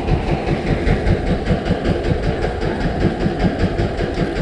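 Boat engine idling with a rapid, even chugging rhythm.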